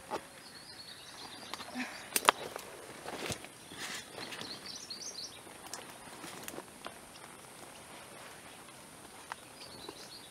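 Outdoor ambience with a small bird twittering in short, quick phrases, scattered sharp clicks and knocks (the loudest a pair about two seconds in), and a steady high hiss underneath.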